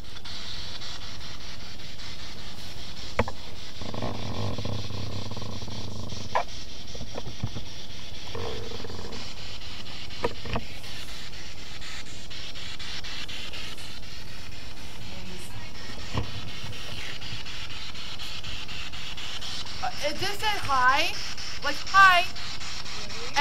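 A steady, loud hiss of static with a few sharp clicks, and a woman's voice near the end.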